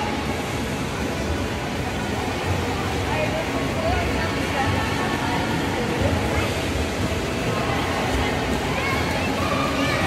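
Echoing indoor swimming-pool hall: a steady wash of noise with distant, indistinct voices and water.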